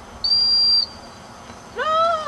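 A dog-training whistle giving one short, steady, high-pitched blast of about half a second: the handler's signal to a dog working at a distance. Near the end a person's voice starts calling out.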